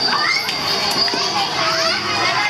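Children playing and calling out on a playground, many high voices overlapping, with a steady high-pitched tone underneath.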